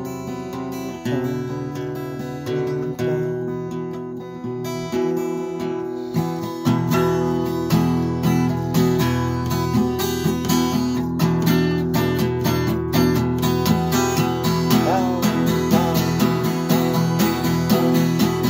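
Acoustic guitar strummed in a steady chord rhythm as an instrumental passage, growing louder about six seconds in.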